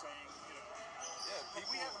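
Quiet conversational speech from men talking in an interview, with one word clearly heard at the very end.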